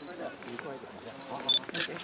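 Several people talking over one another. About one and a half seconds in there is a short high beep, followed at once by a brief sharp click.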